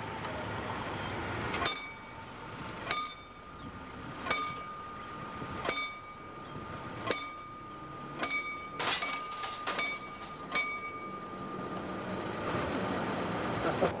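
Mechanical warning bell (Läutewerk) of a level-crossing barrier ringing as the boom is lowered. It strikes about every second and a half at first, then faster and more unevenly near the end, with the ring hanging on between strokes, over a steady background rumble.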